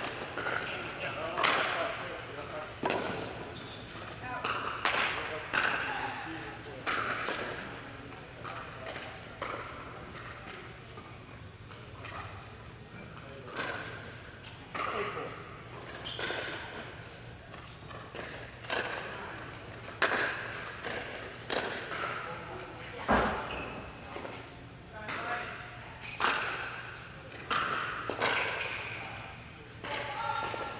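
Pickleball paddles striking the hard plastic ball and the ball bouncing on neighbouring courts: sharp knocks every second or two, echoing in a large indoor hall, with indistinct voices between them.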